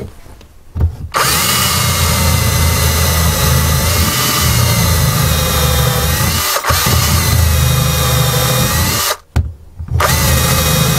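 Power drill boring down through a clamped stack of old hardback books. It starts about a second in, runs steadily with a brief dip past the middle, cuts off shortly before the end and starts again.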